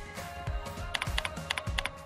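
Computer keyboard typing: a quick run of key clicks starting about a second in, over background music with a steady beat.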